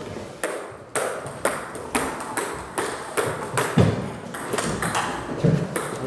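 Table tennis balls clicking sharply off bats and the table top in a hall, about two clicks a second, with a couple of duller thuds between them.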